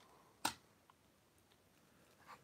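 A single short, sharp click about half a second in, otherwise near silence.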